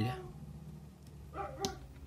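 A dog's brief pitched call in the background, followed by a sharp click as the action figure's swappable plastic face piece is pulled off and the new one snapped into place.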